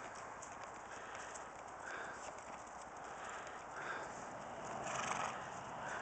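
Horse hooves at a walk on dry grass and dirt, an uneven clopping that grows louder near the end.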